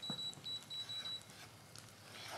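Induction hob's touch controls beeping: a high, steady electronic beep broken into several short pieces that stops a little over a second in, with a faint click at the start.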